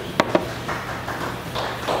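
Two sharp taps of small beer glasses, a split second apart, then a faint steady background.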